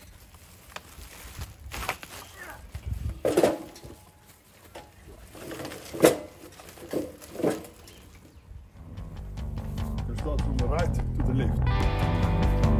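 A woven sack full of firewood rustling and knocking as it is lifted and set down into a stainless steel braai box, with several sharp knocks of wood and metal, the loudest about halfway through. Rock guitar music fades in during the last few seconds and grows louder.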